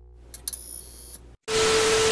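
TV static sound effect: a loud, even hiss with a steady mid-pitched tone through it. It cuts in abruptly about one and a half seconds in, after a faint, fading tail with a couple of small clicks.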